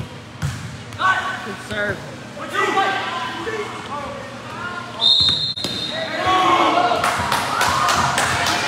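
A volleyball is struck with a thump about half a second in, then players and onlookers shout across the gym. A referee's whistle gives one short, steady blast about five seconds in, the signal for the next serve, and the voices grow louder after it.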